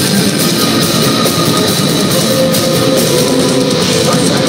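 Metalcore band playing live at full volume, with distorted electric guitars, bass guitar and drums in a dense, unbroken wall of sound. It is recorded on a phone's microphone, so it sounds loud and compressed.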